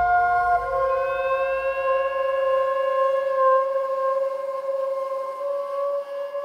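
Slow contemporary chamber music for violin, soprano saxophone and EBow guitar: long, steady overlapping notes. One note shifts to a new pitch about half a second in and higher notes enter after about a second. A low rumble underneath fades away over the first few seconds.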